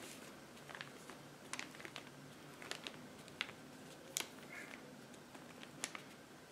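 Flat brush spreading a coat of Mod Podge over a paper print, faint: scattered soft ticks and brush strokes on the paper, the sharpest a little past four seconds in.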